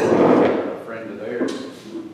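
Indistinct conversation among several people in a large room, loudest at the start, with a short knock or scrape about one and a half seconds in.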